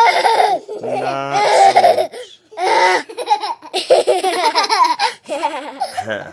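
Young children laughing, high-pitched and almost without a break, with a lower-pitched laugh joining in from about one to two seconds in.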